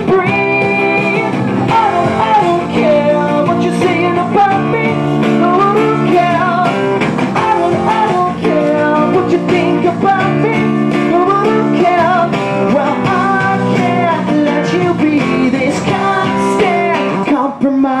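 Live male voice singing a pop-rock song over a strummed acoustic guitar, with a brief break near the end.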